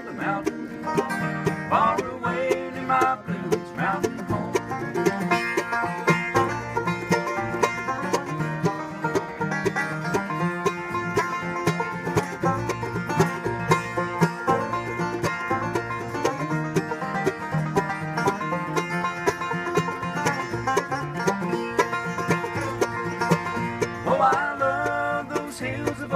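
Acoustic bluegrass band playing an instrumental break: a five-string banjo picking fast runs over strummed acoustic guitar rhythm.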